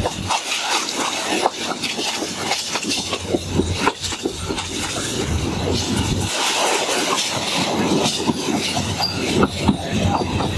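Passenger train running along the track, heard from on board: a continuous rush of running noise with many irregular clicks and knocks from the wheels on the rails.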